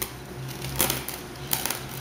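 Faint clicks and light taps of a glass baking dish being handled: one a little under a second in and a short cluster about a second and a half in.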